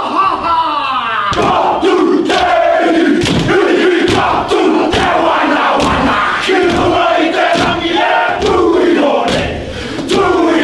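A group of men performing a Māori haka: loud shouted chanting in unison, punctuated by sharp rhythmic beats about twice a second.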